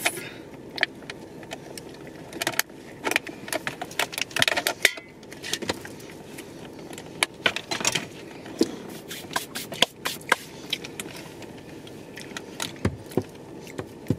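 Close-up eating sounds of a soft lemon poppy seed cookie: irregular small clicks and crackles of chewing and handling the cookie, scattered throughout.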